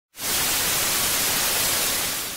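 Television static: the even hiss of an analog TV tuned to no signal, starting abruptly just after the start and holding steady.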